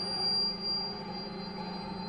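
Contemporary chamber music for tenor saxophone, electric guitar, cello and electronics: a sustained texture of held low drones, with the cello bowing, and steady high pure tones above, one of which swells briefly near the start.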